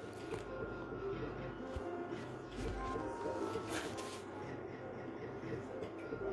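Slot machine's electronic game music with short beeps as the reels spin, over busy gaming-arcade background noise.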